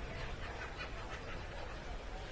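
Faint, steady murmur of a large indoor crowd, with no single sound standing out.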